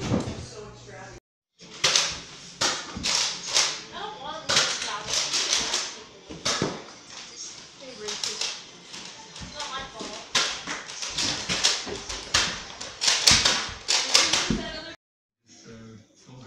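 Children shouting and yelling excitedly without clear words, mixed with scattered knocks and bumps. The sound cuts out completely twice for a moment, once about a second in and once near the end.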